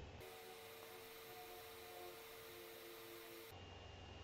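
Near silence: the faint steady hiss and hum of the recording's noise floor, with a few thin, faint steady tones.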